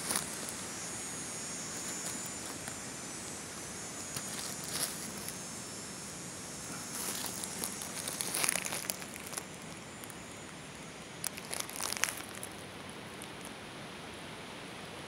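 Dry leaf litter and twigs rustling and crackling in short spells over a steady hiss, as mushrooms are handled on the forest floor close to the microphone.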